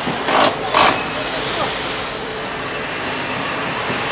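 Steady noise of a busy factory assembly hall, with two short, sharp hisses within the first second.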